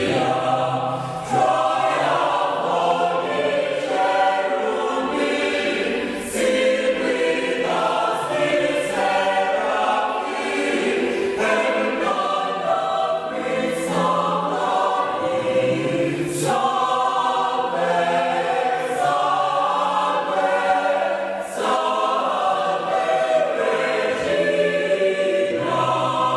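A choir singing a hymn in short phrases, with brief breaks between them.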